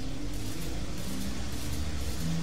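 A low, steady sound-design drone with a hiss over it. A few low tones hold and step between pitches, marking the ceiling contraption coming to life.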